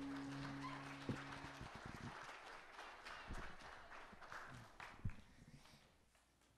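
The held last chord of a worship song dies away about a second and a half in, then a few scattered footsteps and knocks on a stage floor, the room fading almost to silence by the end.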